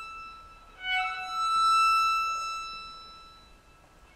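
Violin playing sustained high notes in contemporary chamber music. One note fades at the start, then a new note enters about a second in, swells and dies away.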